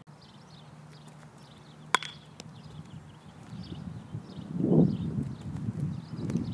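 A baseball bat striking a tossed ball once, a sharp crack with a brief ringing tone, about two seconds in. Low rumbling noise builds in the second half.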